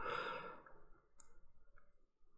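A man's soft exhale or sigh fading out over the first half second, then near quiet with one faint click about a second in.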